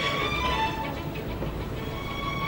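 Classical string orchestra music: held notes that thin out and soften about a second in, then swell again.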